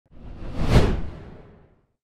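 A single whoosh sound effect that swells to a peak just under a second in, then fades out.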